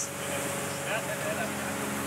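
Scrap-handling excavator's engine running steadily at idle, a constant low hum, with a faint voice in the middle.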